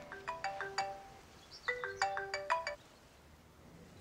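Mobile phone ringtone: a short melodic phrase of struck, marimba-like notes, heard twice, which stops about three seconds in.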